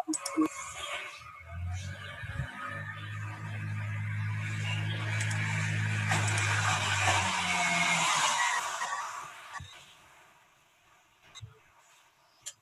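Background noise picked up over a video-call microphone: a steady low motor-like hum joined by a hiss that swells over several seconds and then fades away. It drops to near silence with a few faint clicks about ten seconds in.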